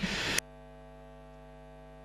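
Steady electrical mains hum, a low buzz made of evenly spaced tones, that is left bare when the rest of the sound cuts out about half a second in.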